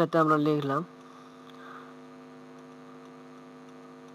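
Steady electrical mains hum in the recording, a constant low drone, after a man's voice stops about a second in.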